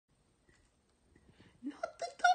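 Faint small scuffs, then a short voiced sound near the end that rises in pitch.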